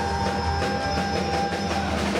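Live rock band playing: electric guitar, bass, keyboard and drum kit, with a steady beat and a held high note that drops out near the end.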